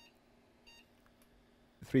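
A faint, short electronic beep about two-thirds of a second in, over a steady low electrical hum; a man's voice starts near the end.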